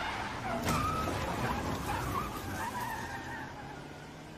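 An SUV pulling away hard, engine running under load and tyres squealing on wet pavement, the sound fading as it drives off.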